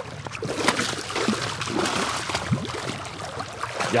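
Water splashing and sloshing at the shoreline as a hooked lake trout is scooped into a landing net, in irregular bursts that grow busier about half a second in.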